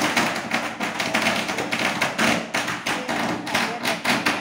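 A stylus tapping and scratching quickly on a tablet's touchscreen while handwriting, a dense run of small knocks and scrapes close to the microphone.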